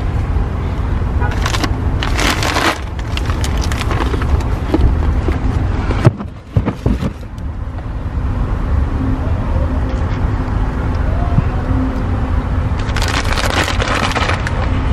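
Steady low rumble of a car, with stretches of louder hissing noise about a second in and again near the end, and a brief dip about six seconds in.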